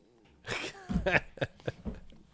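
A man's breathy, wordless vocal sounds starting about half a second in, with short voiced parts whose pitch slides up and down.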